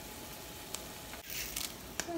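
Faint sizzling of an egg on the hot nonstick plate of a Red Copper 5 Minute Chef as a rubber spatula lifts it out, with a small tick under a second in and a brief rush of noise about one and a half seconds in.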